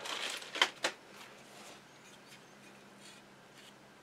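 Light handling noise with two small sharp knocks in the first second, as a metal motor housing and tools are handled on a workbench. This is followed by quiet room tone with a faint steady hum.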